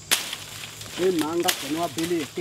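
Sharp cracks as bark is worked off a tree trunk by hand: one just at the start and another about a second and a half in. A man's voice speaks in between.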